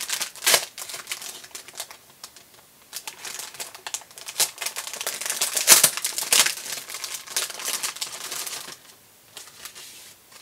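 Clear plastic cellophane packaging crinkling irregularly as it is opened and handled, growing quieter near the end.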